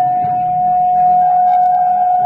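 Live experimental band music built on a drone: one steady high note held throughout, with lower notes shifting underneath.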